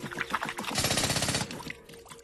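Cartoon sound effect: a fast, even rattle of rapid strokes lasting under a second in the middle, after a few short knocks.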